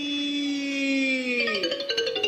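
A khon narrator's chanting voice holds the last syllable of a verse line as one long note. About one and a half seconds in, the note falls away and the accompanying music comes in with quick struck notes.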